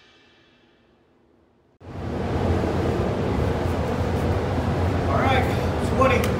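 The last notes of a music track die away. After an abrupt cut, a steady rushing of air with a low hum takes over: a paint spray booth's ventilation running. A man's voice starts up over it near the end.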